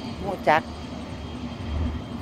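Low, steady engine drone of a cargo barge passing on the river, with a slow pulsing beat.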